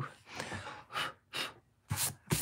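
A woman's short breathy exhales and a soft gasp, with a sharp tap near the end.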